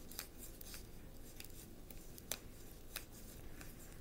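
Tarot deck being shuffled by hand: faint, irregular clicks and snaps of card edges, the sharpest about two seconds in.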